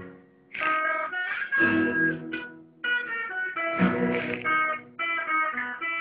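Acoustic and electric guitars playing picked chords and notes in short phrases, with brief breaks just after the start and near three seconds, recorded through a mobile phone's microphone.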